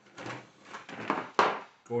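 Plastic model-kit sprues being handled and set down on a table: a short plastic rattling, then one sharp clack about one and a half seconds in.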